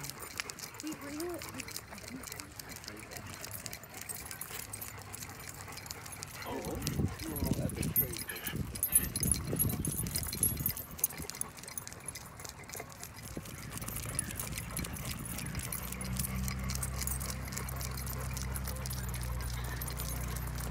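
A dog walk on a paved path: footsteps and the jingle of dog tags and leash clips, with people's voices for a few seconds about a third of the way in. A steady low hum comes in over the last third.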